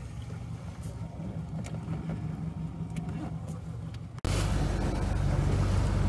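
Mercury 115 Pro XS FourStroke outboard running at a low, steady idle just after being restarted from a stall; it stalls on plane and will only run just above idle, a fault the owner puts down to fuel or electrical without knowing which. About four seconds in the sound cuts suddenly to a louder, steady engine hum.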